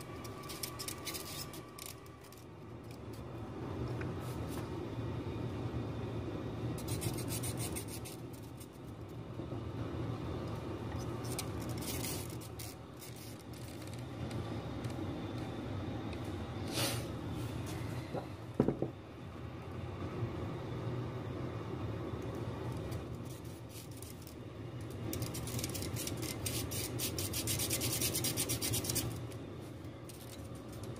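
Close rubbing and rustling of hands working among the wiring and component leads of a tube amp chassis, coming in several bursts, with one sharp click a little past halfway.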